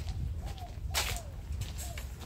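A single sharp snap about a second in, over a steady low rumble, with a few short chirp-like calls around it.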